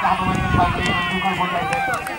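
Several men shouting and calling out over one another, some calls drawn out, with a low steady hum underneath.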